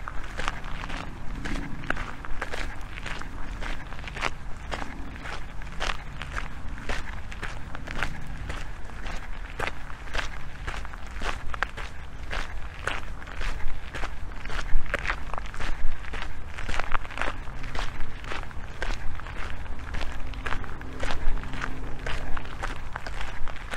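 Footsteps crunching on a fine gravel path at a steady walking pace, about two steps a second, over a low steady rumble.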